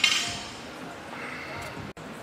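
A bare steel barbell clinking as it is gripped and lifted off the floor, one sharp metallic clink at the start that rings briefly, followed by low room noise.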